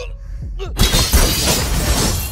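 A short sigh over a low rumble, then a little under a second in, a loud burst of glass shattering that goes on for over a second.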